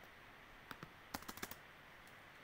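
Faint keystrokes on a computer keyboard: two spaced taps, then a quick run of about five.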